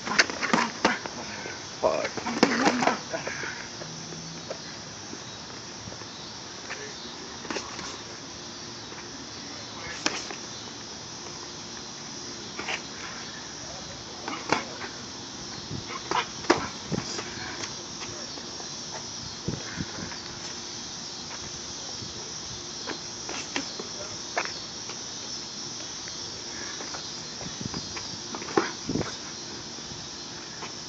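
Boxing gloves slapping as punches land in sparring: a dozen or so short sharp hits at irregular intervals, some in quick pairs. Underneath, a steady chorus of crickets.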